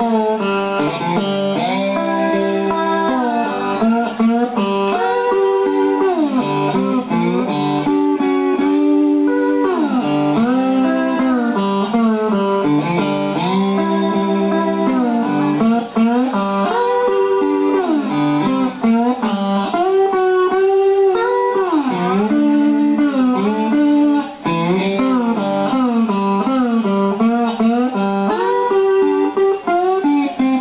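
Electric blues guitar playing an instrumental passage with slide, the notes gliding up and down in pitch, with no singing.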